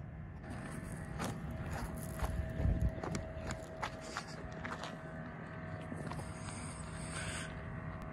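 Footsteps crunching on gravel, many irregular steps, with a low bump about two and a half seconds in.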